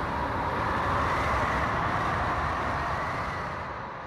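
Steady wash of ocean waves that begins to fade out near the end.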